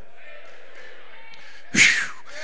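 Low, steady room noise in a large hall, then one short, sharp burst near the end.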